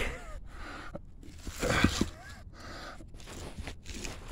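A man straining as he pushes a granite headstone, slid forward off its base, back into place, with a short hard breath of effort about halfway through.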